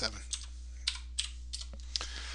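Keystrokes on a computer keyboard: about five separate clicks spread over two seconds, ending with the Enter key that runs a typed command. A steady low electrical hum sits underneath.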